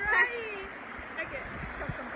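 A person's short high-pitched cry that glides in pitch right at the start, followed by a few faint brief voice sounds, over the steady rush of river water.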